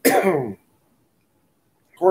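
A man clearing his throat once, a short voiced rasp falling in pitch, lasting about half a second at the start.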